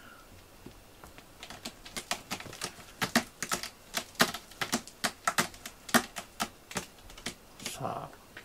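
Cat's claws scratching the sisal-rope post of a cat tower: a fast, irregular run of scratchy strokes, about four a second, starting about a second in and dying away near the end.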